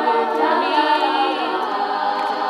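Female a cappella group singing, several voices together with no instruments.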